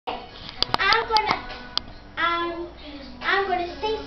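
About six sharp hand claps in the first two seconds, together with a young girl's voice in three drawn-out phrases.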